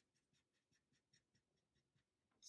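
Near silence, with faint scratching of a felt-tip marker colouring in on paper in quick repeated strokes.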